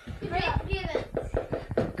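Voices talking and shouting, with scattered knocks and thumps from wrestlers scuffling in the ring.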